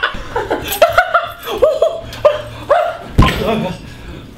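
A man laughing wildly in a string of short, pitched bursts, two or three a second. A low thump about three seconds in.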